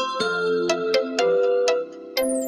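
Logo intro jingle: a quick run of bright, bell-like struck notes, about four a second, over sustained chord tones.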